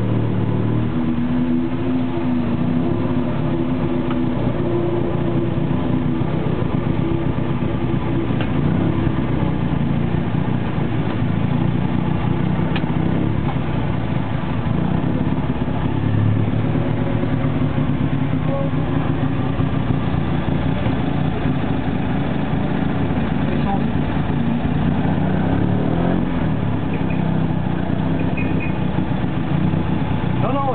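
A classic racing car's engine running at low speed, heard from inside the cabin, steady with small rises and falls in revs as the car creeps along.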